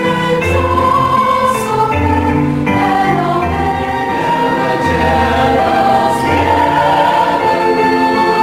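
A mixed choir of women and men singing together, holding chords that change about once a second.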